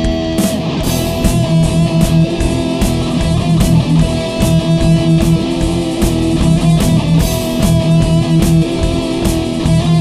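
Instrumental passage of a heavy metal song: electric guitars over bass and drums, with drum hits striking at a steady rhythm and no singing.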